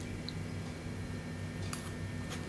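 Steady low hum, with a couple of faint clicks near the end.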